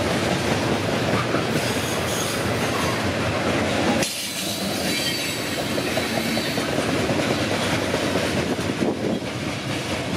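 Norfolk Southern coal train's gondola cars rolling past on steel rails, a dense steady rumble of wheels on track. About four seconds in the sound eases a little, and a faint high wheel squeal comes through as the tail of the train goes by.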